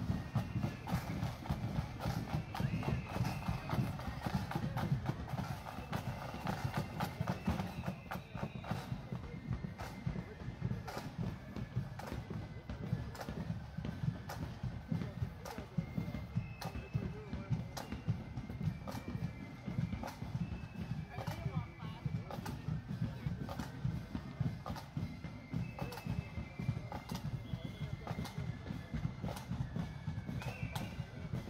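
Marching band moving off down the street, drums tapping out a marching beat with faint flute notes over it, and onlookers chatting nearby.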